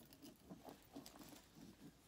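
Faint, irregular light clicks and rustles of a Dooney & Bourke Trina Satchel handbag being handled and turned over in the hands.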